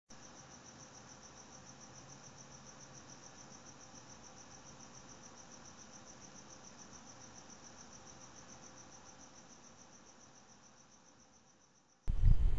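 Faint, steady chirping of a cricket: one high note pulsing evenly several times a second, fading out over the last few seconds.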